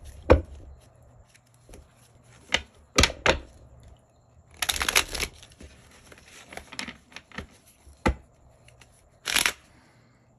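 Tarot deck shuffled by hand: irregular short bursts of card noise as the cards are riffled and tapped together, the longest cluster about five seconds in and another near the end.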